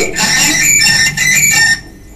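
Harsh, garbled noise coming in over a caller's telephone line, loud and jumbled, cutting off suddenly just before the end. The presenter puts it down to the caller's television being turned up too loud and feeding back into the call, so that nothing can be understood.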